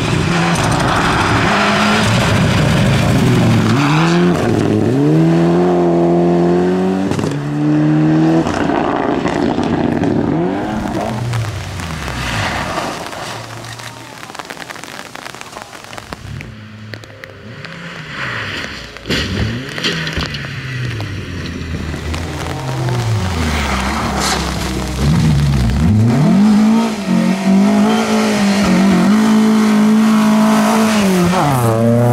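Rally car engines on a gravel stage, several cars in turn, revving hard with pitch climbing and dropping through gear changes. About halfway through there is a quieter spell broken by short revs. Near the end a four-cylinder Volvo 240 rally car comes close at full throttle and is loudest.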